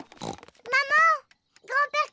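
Speech: a cartoon character talking in French in a high, child-like voice, with a short pause about midway.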